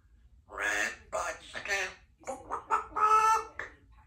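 Congo African grey parrot vocalizing in two voice-like runs of chatter, the second ending in a louder held note.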